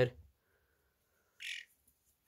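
A young European starling gives one short, harsh squawk about one and a half seconds in.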